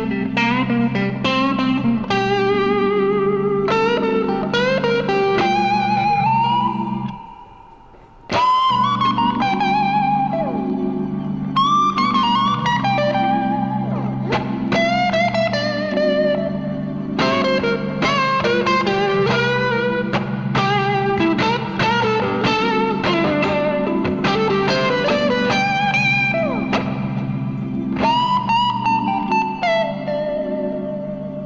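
Slow, calm electric guitar solo in a clean tone, single notes with vibrato, over sustained organ chords; the music drops out for about a second around seven seconds in.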